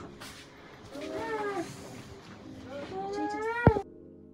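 A baby fussing with two short, high-pitched whiny cries, the second rising, then a sharp knock near the end.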